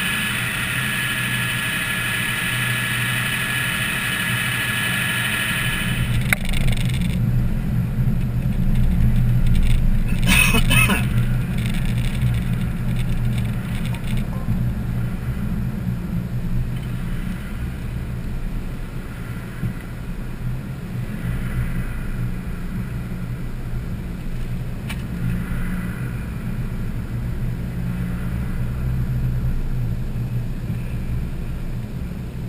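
Car engine and road rumble heard from inside the cabin as the car pulls away from a stop and drives on, growing louder about six seconds in. A steady hiss with a thin whine cuts off suddenly about seven seconds in, and a brief rushing burst comes about ten seconds in.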